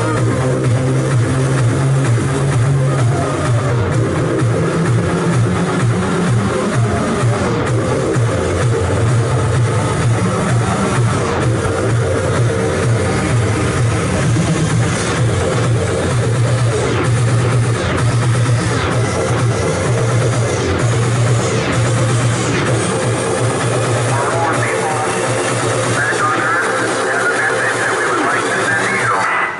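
Electronic dance music mixed live on Pioneer CDJ decks and a DJ mixer, with a strong, steady bass line; a brighter layer builds up near the end.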